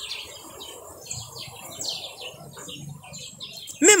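Birds chirping: a run of short, high chirps repeated through a pause in the talk.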